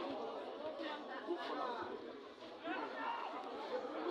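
Overlapping chatter of several people talking and calling out at once, no single voice standing out.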